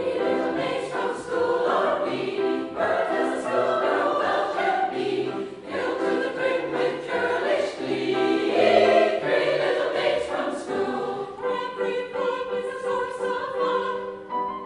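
A choir singing together, coming in at full voice right at the start and carrying on as a sustained, multi-voiced choral passage.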